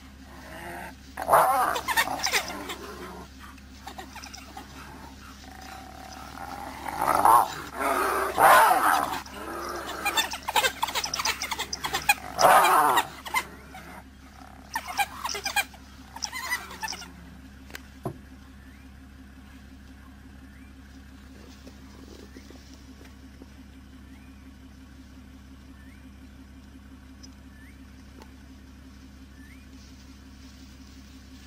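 Spotted hyena and African wild dogs clashing: loud, irregular squealing and growling calls in bursts for the first seventeen seconds or so. After that the calls stop, leaving a steady low hum with a few faint short chirps.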